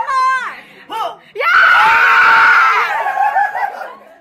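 People screaming loudly together for about a second and a half, starting a little over a second in, after a short high squeal at the start.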